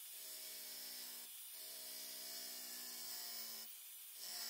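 A small WEN 1/2 x 18 inch belt file sander running with an 80-grit belt, grinding down the corner of a framing nailer magazine. Its motor gives a steady hum that dips briefly about a second in and again near the end.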